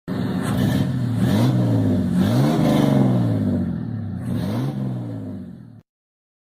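A vehicle engine running and revving up and back down three times, cut off abruptly near the end.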